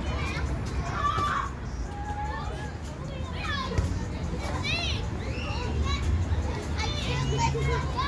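Children's voices at play: high-pitched shouts and squeals that rise and fall in pitch, over a low steady rumble.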